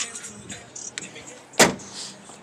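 A single sharp thump about one and a half seconds in, over faint music playing from the car's stereo.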